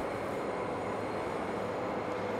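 Steady hum and hiss of processing-room machinery and ventilation, even throughout, with faint steady tones in it.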